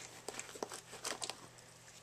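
Faint handling noise: a quick run of small clicks and rustles over about a second, as small items are handled and set down on a tabletop mat.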